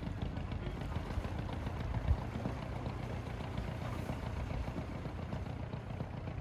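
A small fishing boat's motor running steadily at low speed as the boat moves off across calm water, a low hum. There is one brief knock about two seconds in.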